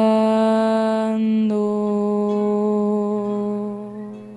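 A woman singing, holding the song's closing note in one long steady tone that fades away near the end.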